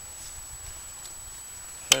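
Quiet, steady outdoor background with a faint low rumble while a handheld camera moves over the grass. Near the end there is a sharp click, and a man starts to speak.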